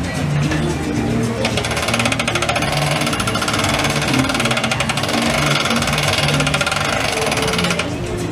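The crank wheel of a cannon-shaped metal contraption being turned by hand gives a fast, even mechanical rattle of rapid ticks. The rattle starts about a second and a half in and stops just before the end, with background music under it.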